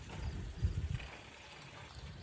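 A few soft, low thuds of steps on the packed dirt of a cattle pen, bunched in the first second.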